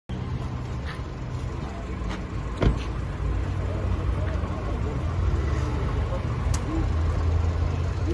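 Steady low vehicle rumble of street traffic, with faint voices. A single loud thump about two and a half seconds in is a car door being shut.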